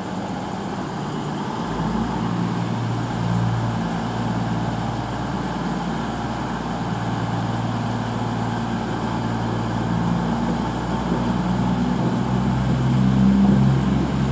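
CrossCountry Class 221 Super Voyager diesel-electric unit's underfloor diesel engines running under power as it pulls away: a steady low drone that grows louder near the end as the train draws closer.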